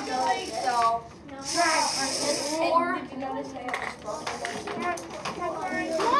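Children talking and calling out over one another in a classroom, with a brief hiss lasting about a second, starting about a second and a half in.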